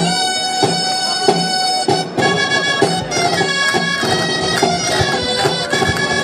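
Traditional Riojan folk dance music starting abruptly: shrill reed pipes play a melody over a steady drum beat.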